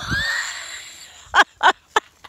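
A person's voice: a long breathy exhale that fades over about a second, then three short breathy laughs near the end.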